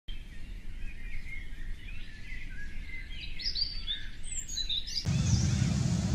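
Small birds chirping and twittering, many quick rising and falling calls. About five seconds in, this cuts off abruptly and a louder low rumbling noise takes over.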